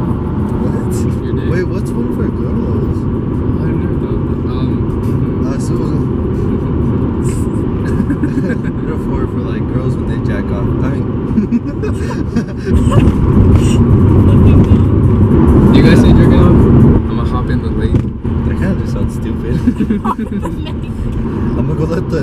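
Inside a moving car: a steady low road and engine rumble under music, with voices mixed in. It grows louder for a few seconds about two-thirds of the way through.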